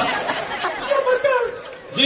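Indistinct voices talking over the stage loudspeakers, fading out near the end.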